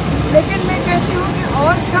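A man speaking in Hindi, mid-sentence, over a steady low background rumble.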